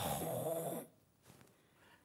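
A person's short, breathy, wordless vocal sound with a faintly wavering pitch, lasting under a second.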